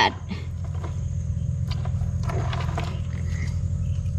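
A steady low hum, with faint splashes of water as crayfish are handled in a shallow, water-filled plastic tub.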